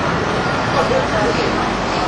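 Steady outdoor street ambience: a continuous noise of road traffic with faint, indistinct voices in the distance.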